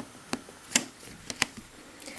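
A few light clicks and taps, about four in all, the loudest a little under a second in, from handling a plastic roller and a freshly rolled-out disc of polymer clay on a work surface.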